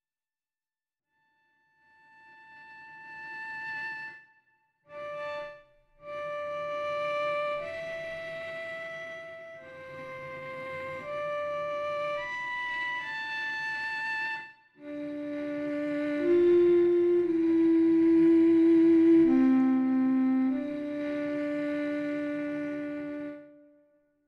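Sampled solo cello playing false harmonics: a slow line of held, flute-like notes, starting about two seconds in with short breaks between phrases. In the second half lower notes come in and overlap, louder, before the sound fades out near the end.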